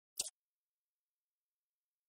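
Dead silence broken by a single brief click about a fifth of a second in.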